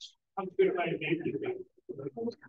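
Speech only: a person says a brief "okay" close to the microphone, after a short hiss at the very start.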